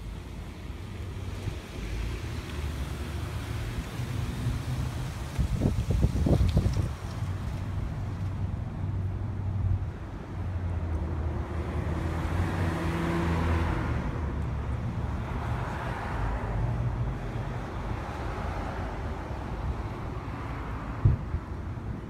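Road traffic: a motor vehicle's engine running steadily close by, with a car passing and swelling then fading about halfway through. A few knocks come about six seconds in and a sharp click near the end.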